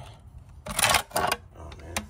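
Handling noise from a chrome side-mirror cover turned in the hand close to the microphone: light clicks and two brief rustling scrapes about halfway through.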